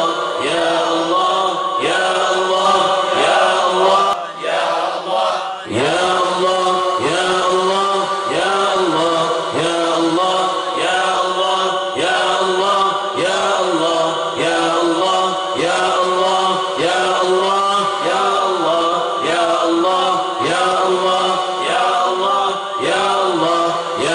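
Male voices chanting zikir together, led over a microphone: one short phrase repeated about once a second. There is a brief drop near the fifth second.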